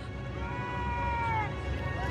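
A man's drawn-out shout of "To arms!", one long call held and then falling in pitch at its end, over a low steady rumble of the episode's score.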